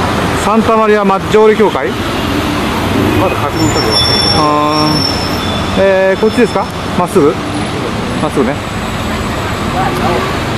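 Rome city-street traffic noise: cars passing and engines running, with voices in the street. A brief steady tone, like a horn, sounds about halfway through.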